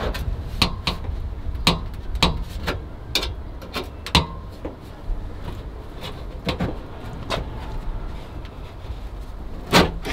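Irregular clicks and light knocks of a thin (about 1 mm) sheet-steel wheel-arch repair panel being pushed and levered by hand into a car's rear wheel arch, with a steady low rumble underneath. The sharpest knock comes near the end.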